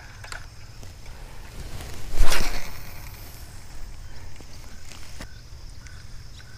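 A brief, loud whoosh about two seconds in, over a low steady background hum with a few faint clicks.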